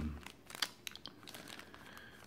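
Small clear plastic zip bag crinkling faintly as it is handled, with a few light crackles and clicks.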